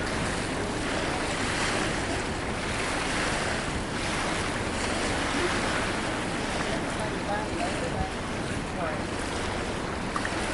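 Small waves washing against a rocky shore, with wind buffeting the microphone: a steady rushing noise that swells and eases every second or so.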